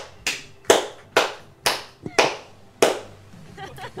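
One person clapping hands slowly, about two claps a second, six claps in all, stopping a little under three seconds in.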